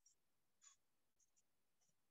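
Near silence, with a few faint, short scratches of a stylus writing on a tablet screen.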